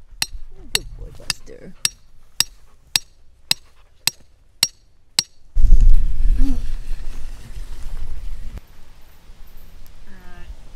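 A hammer drives a steel rebar stake into gravelly ground with ten sharp metal-on-metal strikes, about two a second, each with a short ring. About five and a half seconds in, they give way to a louder low rumble, like wind buffeting the microphone.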